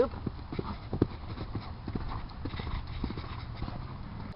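A horse cantering over a low cross-rail jump and away across a sand arena, its hooves landing in a run of dull thuds on the footing.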